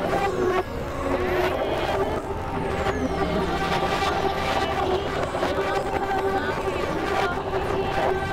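Experimental electronic noise music from synthesizers: a dense, continuous drone of layered steady tones over a low rumble, with scattered faint clicks.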